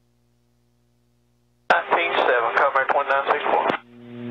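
A recorded air traffic control radio call played back from the PMA450A audio panel's digital recorder: a thin, radio-band voice that starts after a second and a half of near silence with a faint steady hum and runs about two seconds. A hum rises just after the voice stops.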